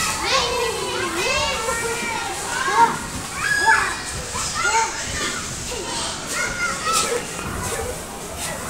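Young children's voices at play: high-pitched babbling, chatter and squeals that come and go.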